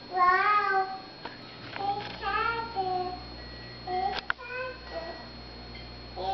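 A toddler's high voice singing and vocalizing in short phrases that rise and fall in pitch, with a single sharp click about four seconds in.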